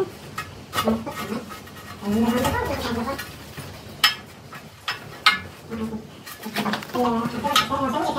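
A few sharp metallic clinks as metal parts are handled at a steel beam being fitted into a stone wall, with indistinct voices talking in between.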